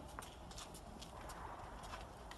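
Faint footsteps and light clicks on a hard floor, irregularly spaced at about three or four a second, over a low room rumble.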